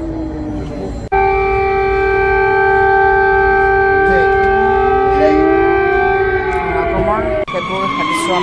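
Several sirens wailing at once: one holds a steady tone while others slide up and down beneath it. The sound is cut abruptly about a second in and again near the end.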